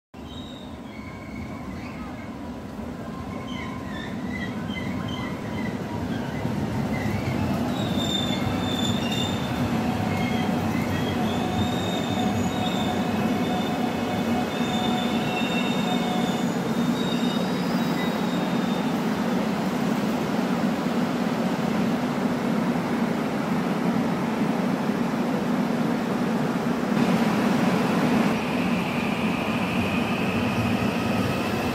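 Korail electric commuter train running along the platform track, its running noise building over the first several seconds and then holding steady, with thin high-pitched squealing tones over the first half.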